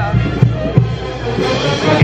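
Loud festive dance music with a steady bass beat.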